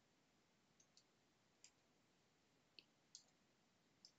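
Faint computer keyboard keystrokes: about half a dozen separate taps, unevenly spaced, as a word is typed.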